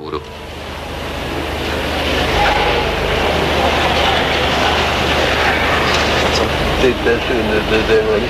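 Hiss and steady low hum of an old archival recording, rising in level over the first couple of seconds, with faint voices under the noise; a priest's voice starts speaking near the end.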